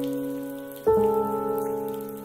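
Slow instrumental piano music: a held chord fades, then a new chord is struck about a second in and rings on, slowly dying away.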